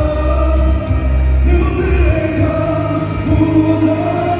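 A male singer singing a Hmong song live into a handheld microphone over backing music, amplified through the PA. The heavy bass drops out about two seconds in while the sung line carries on.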